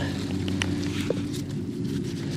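Steady low rumble in the background, with a few faint taps and rustles as red onions are lifted from the bed and mud is knocked off their roots.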